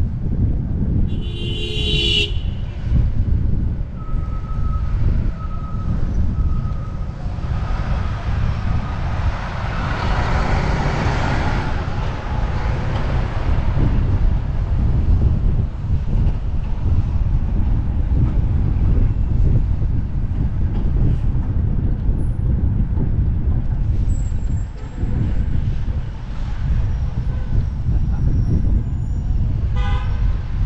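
Wind buffeting a bike-mounted action camera's microphone over city traffic while riding a fixed-gear bike, a steady low rumble throughout. A brief horn toot sounds a second or two in, and a passing vehicle swells and fades around ten seconds in.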